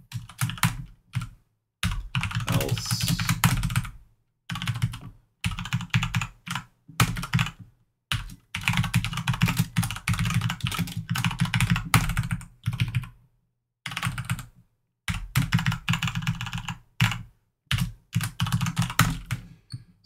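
Typing on a computer keyboard in rapid runs of keystrokes, broken by short pauses.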